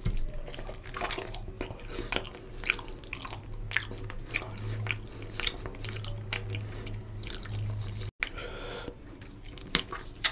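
Close-miked wet chewing of a mouthful of rohu fish curry and rice, with many short sticky clicks and squelches from the mouth and from fingers working the oily rice and fish.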